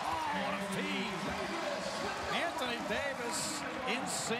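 Television play-by-play commentary over steady arena crowd noise at a basketball game.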